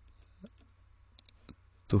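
A few light computer mouse clicks as an item is picked from a drop-down list, most of them about a second in.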